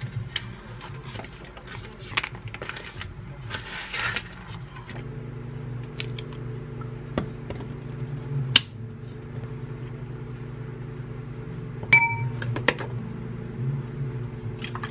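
Plastic sausage wrappers crinkling as they are torn open. After about five seconds a steady electrical hum sets in, and a wooden spoon clinks against a glass mixing bowl while ketchup and water are stirred. A short electronic appliance beep sounds near the end.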